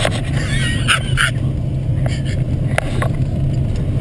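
Buick LeSabre engine running hard under load, heard from inside the cabin as the car ploughs through deep snow, with snow and brush spraying and knocking against the body and windshield. A couple of short high-pitched sounds cut in about a second in.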